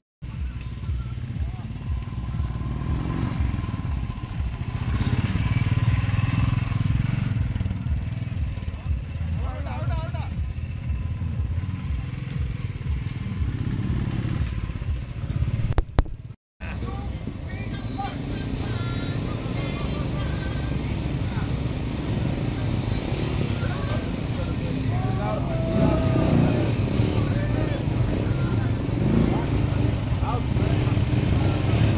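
Motorcycle engines running with a steady low rumble, voices in the background.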